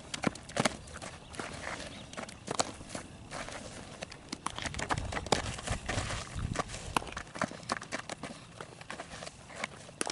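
Footsteps scuffing on infield dirt with scattered sharp knocks and pops, the sounds of a softball fielding drill: ground balls taken into a leather glove and thrown. A low rumble comes in a few seconds in and cuts off about seven seconds in.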